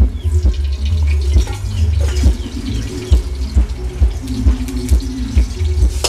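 A gas wok burner running with a steady low rumble, while a metal ladle clinks and scrapes repeatedly in the wok as liquid is ladled in.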